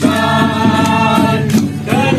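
A group of people singing a hymn together. They hold one long note, break briefly about a second and a half in, then start the next phrase.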